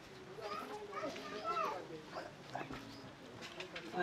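Faint distant voices over quiet outdoor background, a few short calls rising and falling in pitch.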